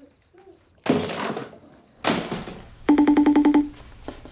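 A sudden thud about a second in, then a short rapid electronic trill of about eleven pulses a second, the loudest sound, lasting under a second near the end.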